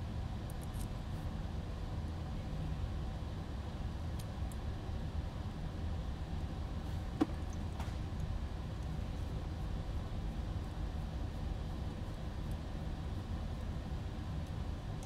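A few faint small clicks of a hex driver and metal screws being handled while standoffs are tightened into a small drone frame, the clearest about seven seconds in. Under them runs a steady low room hum.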